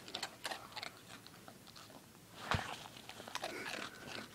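Dog crunching and chewing pieces of Apple Jacks cereal: a run of crisp crunches, with one louder crunch about two and a half seconds in.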